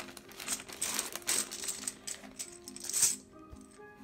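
Small plastic game chips clattering and clicking as they are handled, over soft background music; the clatter stops about three seconds in.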